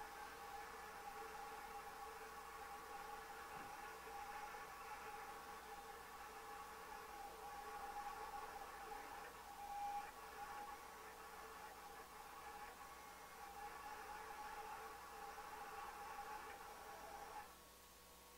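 Roland CAMM-1 GS-24 vinyl cutter cutting a design: a faint, steady whine of several tones from its motors as the blade carriage and the material move back and forth, swelling and fading a little, then stopping suddenly near the end as the cut job finishes.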